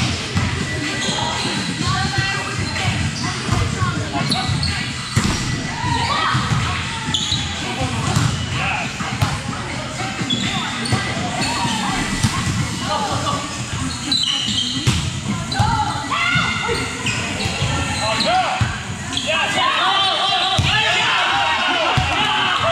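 Indoor volleyball play: repeated sharp smacks of the ball being hit and bouncing on a court floor, mixed with players' voices calling and chatting. The voices thicken near the end.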